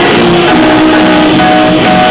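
Rock band playing live and loud, with electric guitars, keyboard and drum kit, recorded from the audience.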